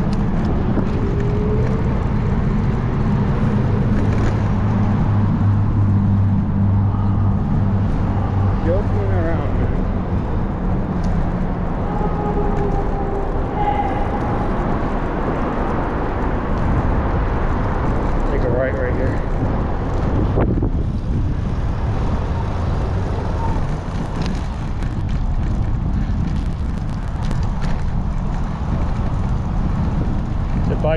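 Road traffic noise and wind rushing over the microphone of a moving bicycle, with a low steady drone through the first twelve seconds or so.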